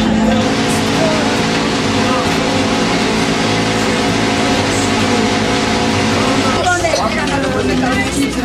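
A steady mechanical drone, like a running motor or engine, holding several unchanging tones. A voice comes in over it near the end.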